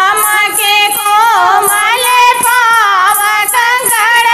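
Two women singing a Hindi folk bhajan (lokgeet) together, their voices sliding through ornamented melodic lines, over a steady high rhythmic beat.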